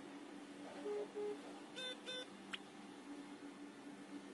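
Faint steady electrical hum and hiss, with two short low beeps about a second in, then two higher electronic beeps around two seconds in and a brief click-like tone just after.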